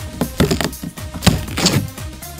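Rotted luan plywood boat hull skin cracking under a finger pressed into it: a few sharp cracks. The plywood is weathered so badly that a finger nearly goes through. Background music plays underneath.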